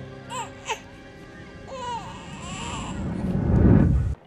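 An infant crying in short wavering wails over soft music, then a rising whooshing swell that builds to the loudest point near the end and cuts off suddenly, a scene-transition effect.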